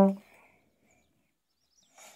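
A trombone note ends at the very start, fading out within a quarter second. Near silence follows, with a few faint bird chirps.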